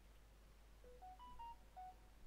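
A quick run of five faint electronic beeps at different pitches, stepping up and then back down, starting a little under a second in and lasting about a second.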